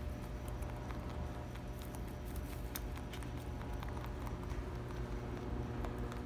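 Angora rabbits chewing hay: a run of small, irregular crunching clicks over a steady low hum.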